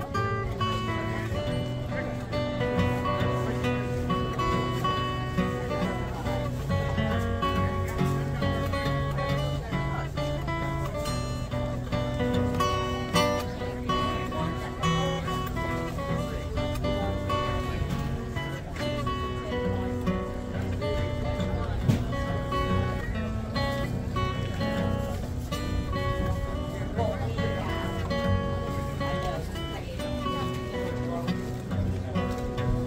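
Acoustic guitar played fingerstyle: a continuous picked melody over chords, with notes ringing on.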